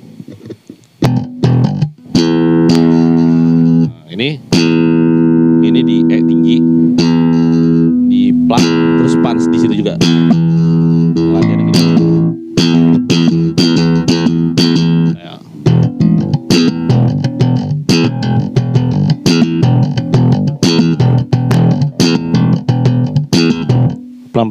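Slap bass on a five-string Squier electric bass: sharp thumb-slap and popped-string attacks. Held, ringing notes fill the first half, and about halfway through it turns into a choppier, busier rhythmic slap groove.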